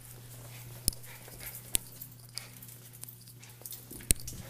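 A small dog's claws clicking and pattering on a hard, shiny hallway floor as it runs with its leash trailing. A few sharper clicks stand out, the loudest about a second in and again near the middle, over a steady low hum.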